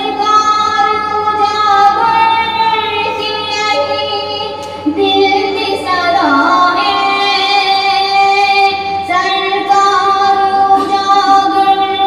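A female voice singing a naat, drawing out long held notes that bend slowly in pitch.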